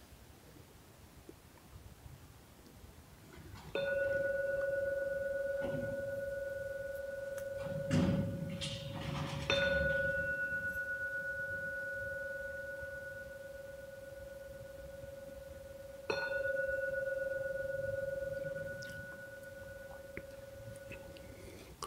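Small temple bell struck three times with a wooden striker, about six seconds apart, each strike a clear ringing tone that rings on until the next. A soft handling bump comes just before the second strike. The three strikes mark the end of a guided meditation.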